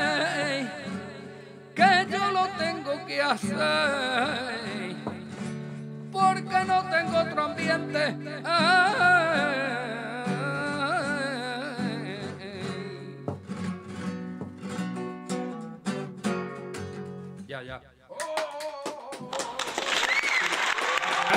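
A man sings a flamenco-style song in a wavering, ornamented voice with added reverb, accompanying himself on acoustic guitar. The singing stops about two-thirds of the way in, and the guitar strumming plays on to a close near the end.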